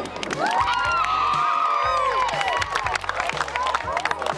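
A small group of young girls cheering and shouting together, several high voices overlapping for about two seconds, with scattered hand-clapping that goes on after the cheers fade.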